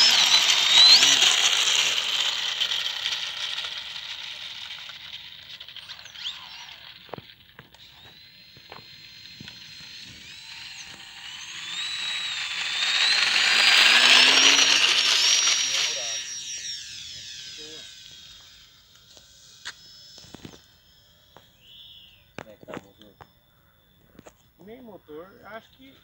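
Electric RC trainer plane's 2830-size 1000KV brushless motor and propeller running at high power, a high-pitched whine. It fades as the plane moves away, swells to its loudest about 14 seconds in as the plane passes close on its takeoff run, then dies away into the distance, leaving a few faint clicks.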